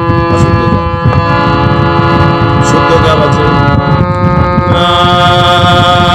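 Damaged harmonium playing held chords that change about a second in and again near five seconds, over a heavy low rumbling noise. A voice briefly sings along in the middle.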